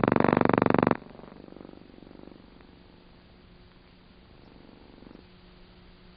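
A voice with a buzzing, pulsing quality cuts off abruptly about a second in. After it comes only the faint steady hum and hiss of an old film soundtrack.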